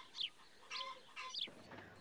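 Birds chirping faintly, a few short high calls spaced through the pause.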